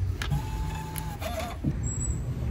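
Queue-number ticket machine printing and feeding out a paper ticket: a click, then a steady motor whine for about a second.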